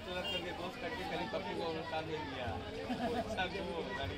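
Several people talking at once, a steady chatter of voices.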